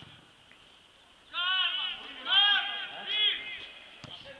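Loud, high-pitched shouts across a football pitch, three calls one after another starting about a second in, after a brief lull.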